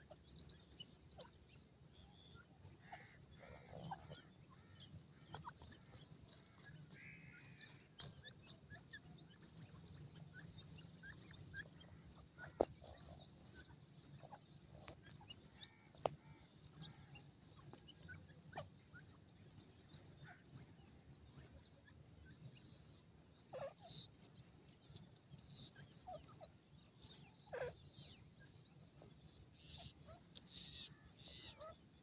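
Grey francolin chicks giving many rapid, high-pitched peeps, faint and almost continuous, with a few lower calls and clicks here and there.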